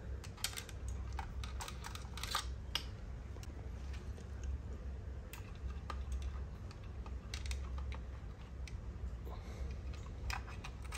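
Scattered light plastic clicks and rattles from a Subaru WRX side-mirror housing and turn-signal wires being handled, thickest in the first three seconds, over a low steady hum.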